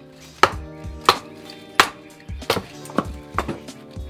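An axe held short striking a small upright stick of firewood on a chopping block, splitting it into kindling: about six sharp knocks, roughly one every two-thirds of a second, the one near the middle loudest.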